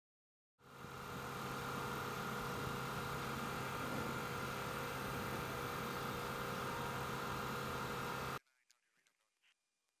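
Steady jet aircraft noise, a loud rushing hum with a low steady drone, as heard in a KC-135 cockpit. It fades in within the first second and cuts off abruptly about eight seconds in.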